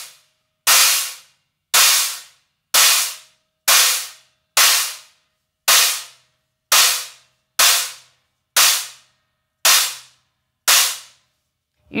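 Meinl Byzance Fat Stack, a holed 18-inch extra dry crash stacked on a 16-inch extra dry china, struck with a drumstick about once a second, eleven short, trashy hits that each die away in under a second. Between hits the wing nut is being turned, taking the stack from its loosest setting toward tighter ones.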